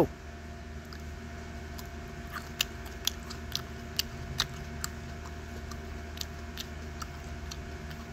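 A person chewing a raw yellow 7 Pot Primo chili pepper, with short crisp crunches at irregular intervals over a steady background hum.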